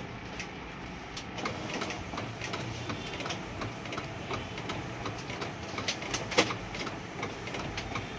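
Epson L8050 inkjet printer printing directly onto a PVC card: the print-head carriage runs back and forth with a steady whir and frequent small clicks, and there is one sharper click about six and a half seconds in.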